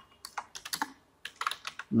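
Computer keyboard keys clicking as a command is typed: a quick, irregular run of keystrokes with a short pause about a second in.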